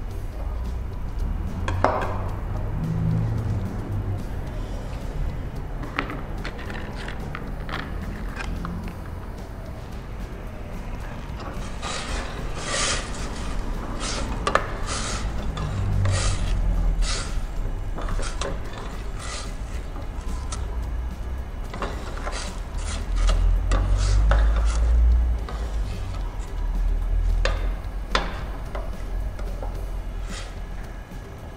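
A metal spoon clacking and scraping against a stainless pot in quick, irregular strokes as the hibiscus-flower filling is stirred and dried out over the gas burner, with a low rumble underneath. The clatter is sparse at first and comes thick in the second half.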